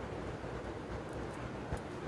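Quiet room tone: a faint steady low hum with one small click near the end.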